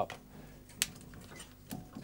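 A single sharp click about a second in as a vintage Jaquet Nixie-tube digital counter is switched on and powers up, over low room tone.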